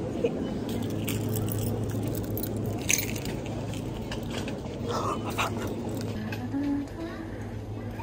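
Supermarket ambience: a steady low hum, a few sharp clicks and knocks from handling and walking, and faint voices in the background.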